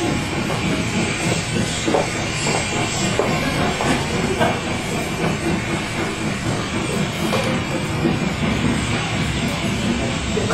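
Recorded sound effect of a departing train played over a theatre sound system: a steady rushing noise with scattered faint clicks.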